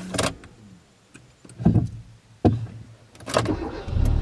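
Car interior with several short clicks and knocks as the driver works the controls to start the car. A low hum sets in partway through, and a louder low rumble comes right at the end as the engine catches.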